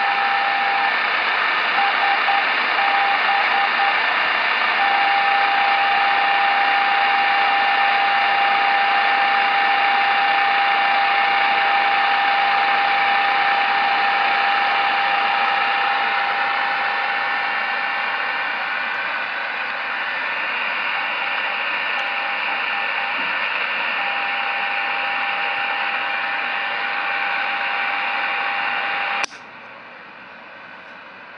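Non-directional beacon (NDB) heard through a Tecsun PL-660 receiver's speaker, picked up on an active ferrite loop antenna: a steady mid-pitched tone over loud static hiss. The tone breaks into a Morse-code identifier twice, a couple of seconds in and about 21 seconds in. The signal and hiss cut off suddenly shortly before the end.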